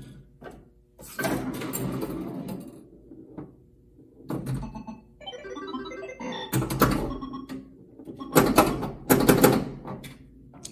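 Bally Star Trek pinball machine in play: bursts of solenoid thunks from the pop bumpers and playfield mechanisms, mixed with the machine's electronic sound effects, coming in several separate flurries.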